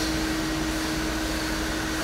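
Steady mechanical hum: an even whirring drone with one constant mid-pitched tone, unchanging throughout.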